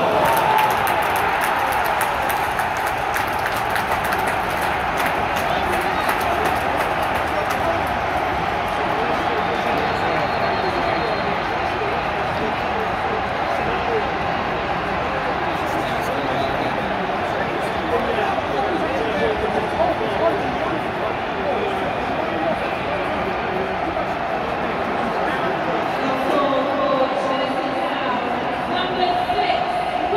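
Stadium football crowd: many voices at once in a loud, steady hubbub that never lets up. Near the end one clearer voice stands out over it.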